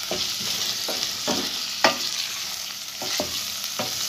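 Diced vegetables sizzling as they sauté in a stainless steel pot, with a steady hiss. A wooden spoon stirs them, scraping and knocking against the pot several times; the sharpest knock comes a little under two seconds in.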